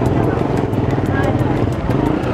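Busy street noise: motorcycle engines running steadily, with people talking in the background.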